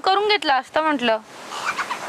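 A person's raised, high-pitched voice speaking in short phrases for about the first second, then faint steady outdoor background hiss.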